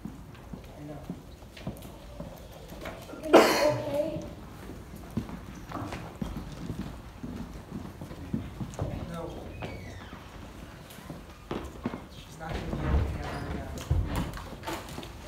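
People's voices in a large, echoing room, with one loud, short cry about three seconds in and softer voices and scattered knocks around it.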